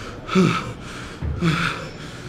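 A man gasping hard for breath, with two loud, strained exhalations about a second apart, each falling in pitch: the heavy breathing of a bodybuilder exhausted by a grueling set.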